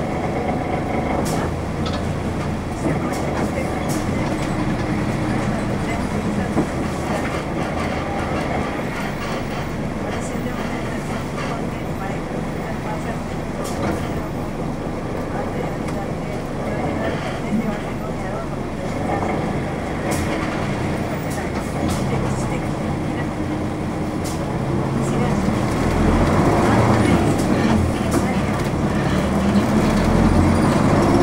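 Inside a 1992 Nissan Diesel U-UA440LSN city bus under way: the diesel engine running with steady road noise in the cabin. It grows louder in the last few seconds as the engine pulls harder.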